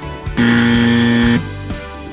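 A buzzer sound effect, one steady low tone lasting about a second, signalling a failed result, over background music.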